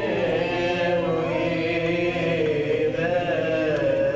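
Coptic Orthodox liturgical chant: voices sing a long, unbroken melody that winds up and down in pitch.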